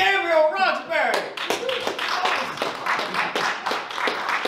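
A voice calls out at the start, then an audience claps, with many quick, uneven hand claps.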